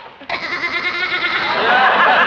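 A sheep bleating loudly in a long, quavering call that starts abruptly a fraction of a second in.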